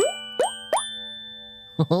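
Three quick cartoon plop sound effects, each a short rising bloop pitched higher than the one before, about a third of a second apart. They mark the pretend-eaten chocolate chips popping off the plate one by one, over soft held music notes.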